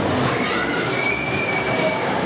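Dodgem cars running across the steel floor of the track, a dense rolling noise with a drawn-out high squeal through the second half.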